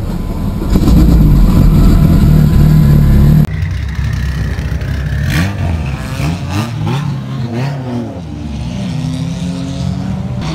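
Turbocharged 2.4-litre four-cylinder of a Dodge SRT-4 Neon race car. For the first three and a half seconds it runs loud and steady, heard inside the cabin. It then cuts to the car heard from outside, the engine revving up and down as it pulls away, with a few sharp clicks.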